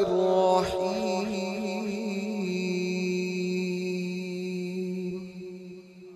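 A man's voice reciting the Quran in a melodic, drawn-out style. One long held note wavers in pitch at first, then settles into a steady tone and fades out near the end.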